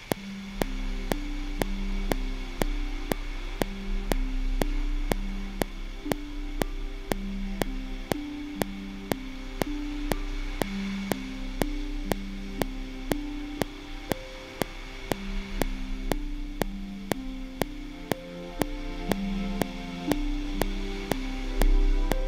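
Sampled orchestral music playing from a laptop music program: a repeating figure of low notes, with simple harp notes played in live on a MIDI keyboard and more of them higher up in the second half. Under it runs a steady metronome click a little over twice a second.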